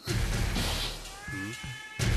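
Film soundtrack music opening with a bass-heavy hit, then a short meow-like sound effect that rises and falls about a second and a half in.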